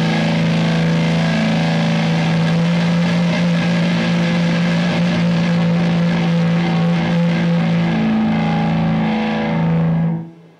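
Heavily distorted electric guitar sustaining a loud drone on one steady low note, with a dense noisy wash above it; it cuts off suddenly at the end.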